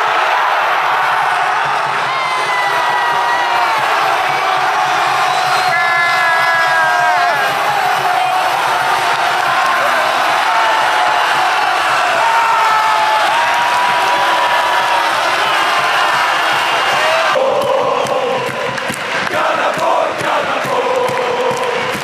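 Football stadium crowd cheering and chanting at a penalty goal: a loud, sustained roar of many voices, with long notes sung together. About 17 seconds in the sound changes abruptly.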